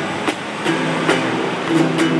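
A small nylon-string classical guitar strummed in a steady rhythm, about two to three strums a second, the chords ringing between strokes.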